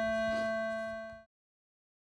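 A steady hum of several held tones, with a faint rustle about half a second in. About a second and a quarter in, the sound cuts off abruptly into dead silence.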